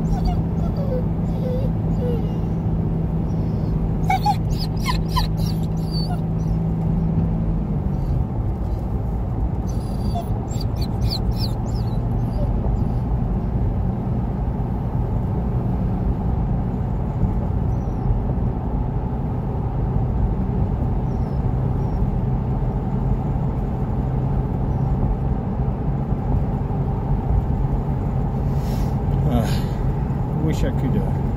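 A car's engine and road hum heard inside the cabin, the engine note dropping lower about eight seconds in. A dog whines in short bouts about four and ten seconds in, and again near the end.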